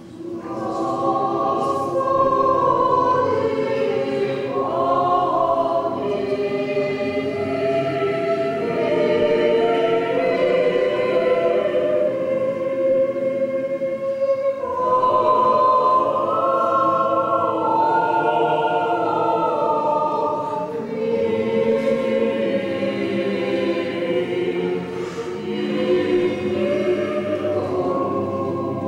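Small Orthodox church choir singing unaccompanied in several voices, a slow liturgical chant in long held phrases, with a brief pause between phrases about 14 seconds in and another around 21 seconds.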